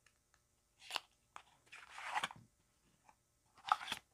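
Tarot cards being shuffled and handled: a few short papery swishes, a longer one about halfway through and another near the end.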